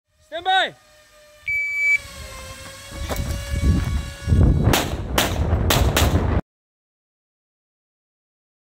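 A shot timer's start beep, a steady half-second tone, followed a couple of seconds later by a handgun firing four quick shots about half a second apart; the sound cuts off abruptly after the last shot.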